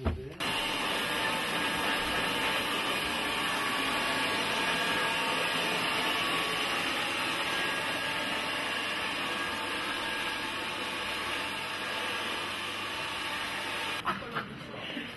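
Hand-held hair dryer running steadily: a constant rush of air with steady whining tones in it. It starts abruptly about half a second in.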